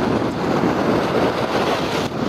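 Steady wind and surf: sea waves washing and breaking on the rocks, with wind blowing across the microphone.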